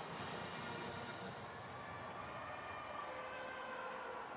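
Steady stadium crowd noise just after a home touchdown, with faint sustained musical tones under it.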